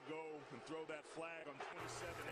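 Faint speech: a man's voice, low and distant, from the football game's TV broadcast audio.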